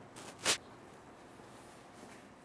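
A quick nasal sniff about half a second in, with a fainter one just before it, as a person smells someone's skin or perfume up close; otherwise low room tone.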